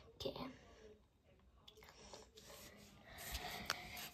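Faint scratching and rubbing of a pencil on sketchbook paper, growing louder over the last second.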